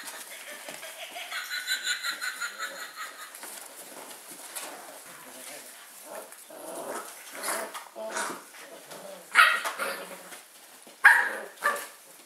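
Bearded Collie puppies playing and yapping, with three loud, sharp puppy barks near the end, the last two close together.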